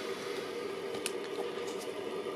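Original Anycubic Photon resin 3D printer, switched on and idle, its cooling fan running with a steady hum. A single click about halfway through.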